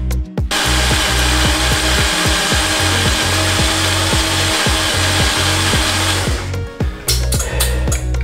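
A power tool runs steadily for about six seconds, starting and stopping abruptly, over background music with a steady beat.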